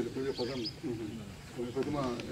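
Men talking in low voices, in conversation not picked up as words, pausing briefly about halfway through.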